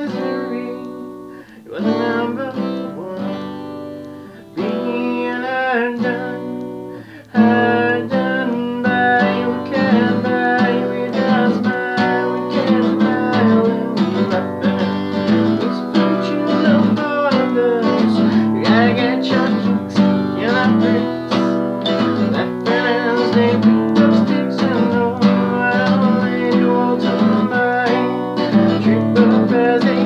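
Cutaway acoustic guitar strummed: a few separate chords with short gaps in the first seven seconds, then fuller, louder, continuous strumming.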